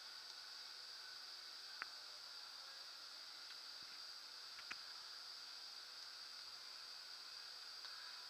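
Quiet steady high hiss, with two faint clicks of the soft starter's keypad buttons being pressed, about two seconds and just under five seconds in.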